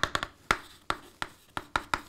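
Chalk writing on a blackboard: a quick, irregular series of sharp taps and short scratches as each stroke is made.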